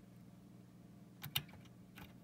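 Faint steady electrical hum from the powered test setup, with two quick clicks about a second and a quarter in as a red alligator-clip test lead is handled and clipped onto the power supply board.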